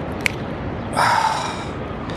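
A sharp breath out through the nose about a second in, over a steady outdoor background hiss, with a small click shortly before.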